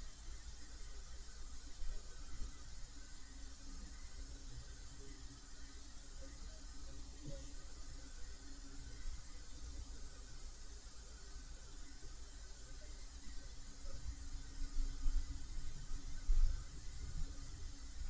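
Quiet room tone: a steady faint hiss with a low hum. A few soft faint clicks come near the end.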